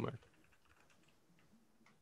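Faint typing on a computer keyboard: a run of light key clicks.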